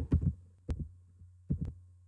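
A few soft keystrokes on a computer keyboard, heard as short low thuds with light clicks, spaced out over about two seconds, over a steady low hum.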